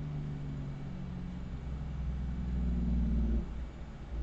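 A low rumble with a faint hum, like a motor running, growing louder and then cutting off suddenly about three and a half seconds in.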